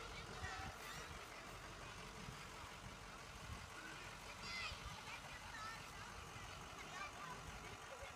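Faint, distant children's voices over the low running of an idling school bus.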